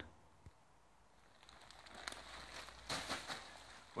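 Faint rustling and crackling of plastic bags and clothing being handled. It starts about a second and a half in, with a few brief, slightly louder crackles in the second half.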